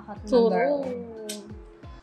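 A woman's drawn-out wordless vocal sound, rising briefly and then sliding down in pitch for about a second, over soft background music.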